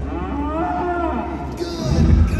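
Animatronic Triceratops's call, a sound effect played over arena loudspeakers: one long, low call that rises and then falls in pitch, over a steady low rumble.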